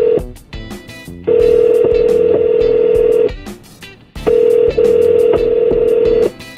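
Telephone ringback tone of an outgoing call: a steady tone rings twice, about two seconds each with a one-second pause between, while the call waits to be answered.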